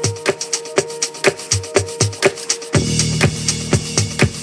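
Music with a steady beat, about four hits a second, played through a YIER 80 W portable Bluetooth speaker. A heavy bass line comes in nearly three seconds in.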